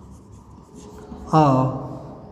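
Chalk writing on a chalkboard: faint scratches and taps of the chalk as words are written. About a second and a half in, a man says a single word, louder than the writing.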